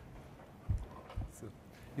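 Quiet room tone with two soft, low thumps about half a second apart near the middle.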